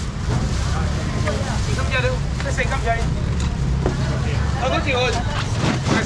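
Indistinct chatter of shoppers and vendors crowding a market stall, with scattered short bits of talk over a steady low rumble.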